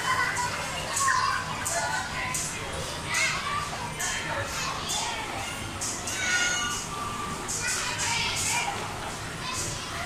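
Children playing: a busy mix of high children's voices, calls and chatter at a crowded indoor play area.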